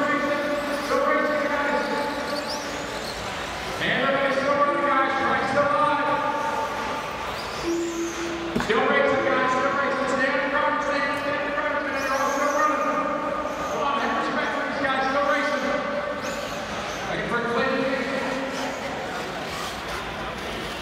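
A man's voice over a public-address system, echoing in a large hall, with the words smeared by the reverberation.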